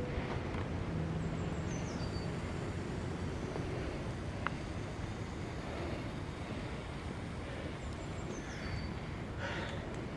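Outdoor background: a steady low rumble of wind and ambient noise, with a small bird singing a short phrase of high notes stepping downward, twice, about a second in and again near the end.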